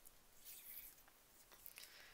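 Near silence, with faint soft rustling of hands handling embroidery floss and a needle.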